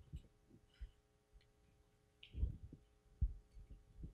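Quiet room tone with a faint steady electrical hum and a few soft, low thumps, the clearest about two and a half and three and a quarter seconds in.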